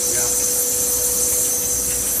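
Wire EDM machine cutting, with the water flush jetting around the wire at the cut: a steady high hiss and a steady hum that holds one pitch.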